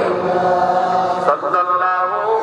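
A man's voice chanting a melodic line in the sung style of a waz sermon, holding long notes that step up and down in pitch, with a brief break a little over a second in.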